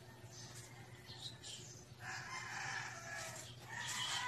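A rooster crowing: one long, slowly falling call that starts about halfway through and runs on to the end, over a steady low hum.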